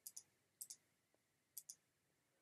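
Three faint computer mouse clicks, each a quick pair of ticks from the button being pressed and released.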